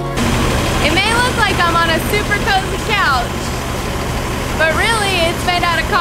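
Steady low hum of an idling vehicle engine, with a person's voice talking in two short stretches over it.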